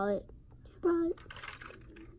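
A child's voice says two short words, then faint light clicking and rustling of a plastic LEGO car being handled close to the microphone.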